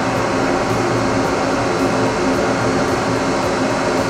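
Exhaust fans running, a steady whir with a low hum under it, drawing air through a laser enclosure while a diode laser engraves.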